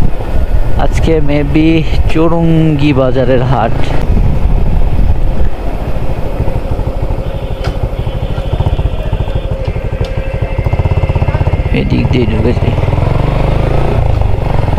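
Motorcycle engine running steadily at low road speed, heard from the rider's seat, with a faint high steady tone for a couple of seconds in the middle.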